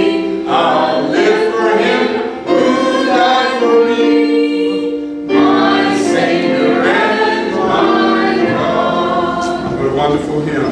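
A church congregation singing a hymn together, with long held notes.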